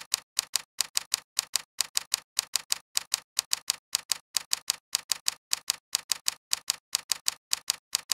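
Typing sound effect: rapid, evenly spaced key clicks, about five a second, each stroke a quick double click.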